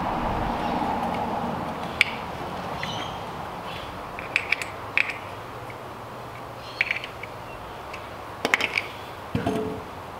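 Sharp metallic clicks and clinks, several spaced a second or two apart, some with a short ring, from a tool working the bar clamp bolts on a stunt scooter, over a steady background hiss.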